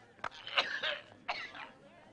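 A person making a few short wordless vocal sounds, about three brief bursts.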